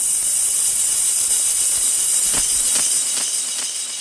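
A steady, high-pitched hiss that swells in and slowly fades near the end, with a few faint ticks in it. It is a sound effect bridging two scenes of a 1970s radio play.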